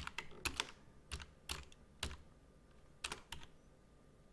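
Typing on a computer keyboard: a scattered run of separate keystrokes with uneven pauses between them, as a short name is keyed in.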